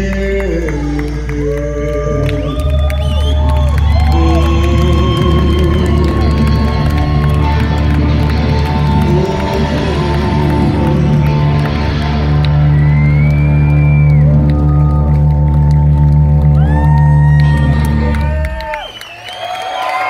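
Live hard rock trio on electric guitar, bass and drums holding a long, loud closing chord with sliding guitar notes over a sustained bass. It stops sharply about eighteen seconds in, and the crowd cheers.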